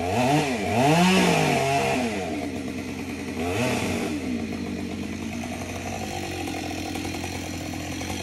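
Chainsaw revved up and down several times in quick succession, and once more about halfway through, then running steadier and lower at idle.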